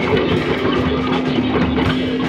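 Live instrumental rock jam: drum kit playing with guitar, one low note held steady under the drums.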